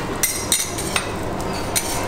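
Sharp metal taps and clinks of kitchen utensils at a buffet griddle station, about four in two seconds, the loudest about half a second in.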